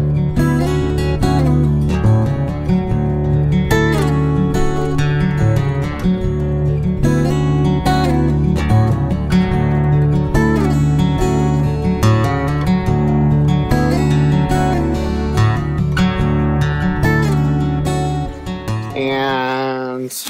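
Background music: a guitar-led track with a steady bass line, which stops near the end.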